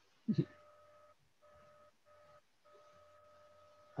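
A short vocal sound about a third of a second in, like the tail of a laugh. It is followed by a faint, steady electronic tone that drops out briefly three times.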